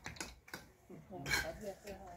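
Faint voices of men talking at a distance, starting about a second in, with a few light clicks near the start.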